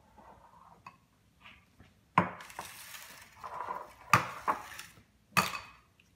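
An egg knocked against a ceramic mixing bowl three times, sharp clinking taps about a second or so apart, with the shell crackling between them as it is cracked open.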